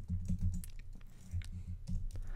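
Computer keyboard keystrokes: a quick cluster of taps, then a few single, irregularly spaced key presses.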